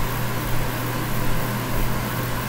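Steady background hum with an even hiss, a continuous machine-like room noise with no change through the pause.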